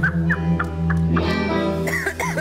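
Studio band music with steady held bass notes under a fast, warbling line of short rising-and-falling high notes.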